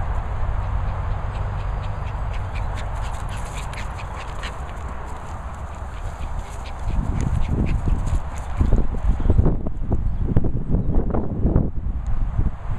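Dogs at play on grass, giving short harsh play vocalisations. From about seven seconds in, irregular low rumbling buffets take over.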